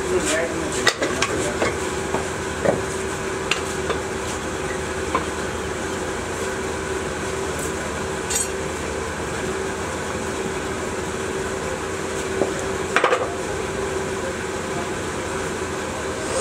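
Steady machine hum with scattered metallic clinks and knocks as a metal moulding flask and tools are handled on a sand-mould board; a quick run of knocks about thirteen seconds in is the loudest.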